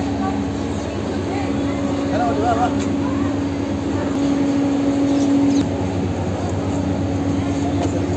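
A steady machine hum at one pitch, a little louder in the middle and dropping slightly about five and a half seconds in, under the murmur of people talking.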